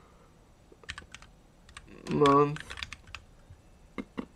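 Computer keyboard typing in short runs of keystrokes, with a brief wordless vocal sound, like an 'mm' or 'euh', a little past the middle, the loudest moment.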